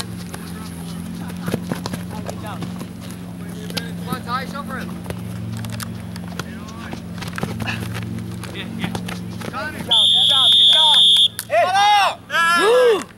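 Referee's whistle blown once near the end, a single steady high-pitched blast of just over a second that stops play. Scattered shouts from players and sideline voices, over a steady low hum.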